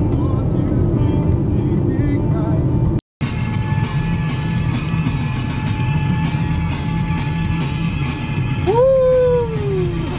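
Steady low road and engine rumble inside a moving car's cabin, with music playing over it. Near the end a man's loud cry rises and then falls in pitch.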